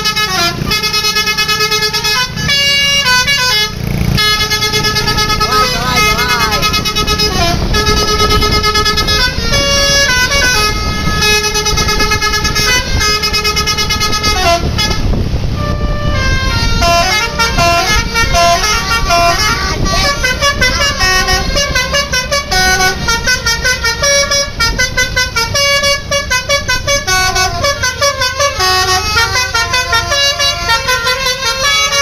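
Bus telolet horns: a coach's set of multi-tone musical horns playing quick tunes of stepped notes over the bus engine, with a short break in the tune about halfway through.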